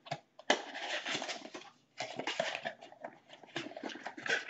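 Rustling and crinkling of packaging as a small box is opened and the device inside is handled, in irregular bursts.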